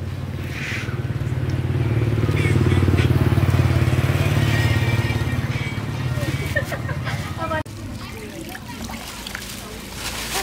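A motorbike engine passing on the road, swelling over a few seconds and then fading, cut off abruptly near the end.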